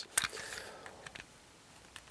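Handling noise from a plastic transforming-robot toy car: a few faint clicks and taps as its sword and parts are moved, the sharpest just after the start.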